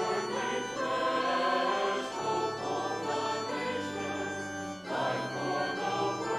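A choir singing a hymn in held, sustained phrases, with a short break between phrases about five seconds in.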